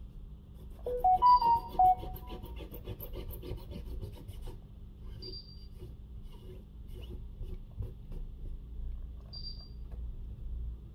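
Cotton swab rubbing hard along the edge of a phone's frame to clear leftover adhesive, a continuous scratchy rubbing. About a second in come a few loud, short squeaks, with fainter high squeaks later on.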